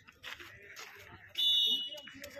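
Referee's whistle, one short shrill blast about one and a half seconds in, signalling the penalty kick to be taken, over faint crowd chatter.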